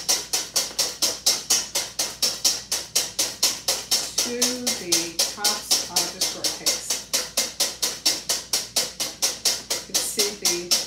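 Wire whisk beating cold heavy whipping cream by hand in a stainless steel bowl: a fast, steady rhythm of metal strokes against the bowl, about five a second.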